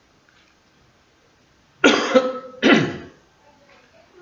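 A man coughing twice, two short harsh coughs in quick succession about two seconds in.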